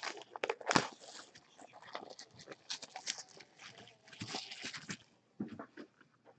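Trading cards and pack wrappers being handled: a run of rustles and sharp clicks, the loudest a snap just under a second in.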